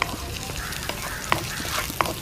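Sliced shallots, garlic, green chillies and curry leaves sizzling in hot oil in a wok, stirred with a wooden spatula that knocks against the pan a few times.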